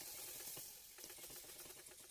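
Faint sizzling and liquid sounds as cold milk is poured into a hot flour-and-margarine roux in a stainless steel saucepan and whisked in, the start of a béchamel sauce.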